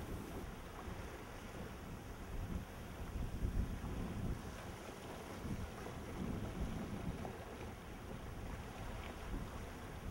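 Wind buffeting the microphone outdoors, an uneven low rumble that swells now and then, with no clear engine note.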